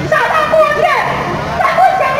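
A high-pitched voice shouting through a loudspeaker, in short bending calls, over the low noise of a crowd.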